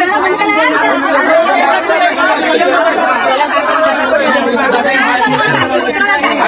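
Speech only: several people talking over one another, the overlapping voices of a group of women and children.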